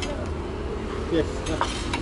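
Ceramic plates being set down on a table, with a couple of sharp clinks in the second half, over a steady low background rumble.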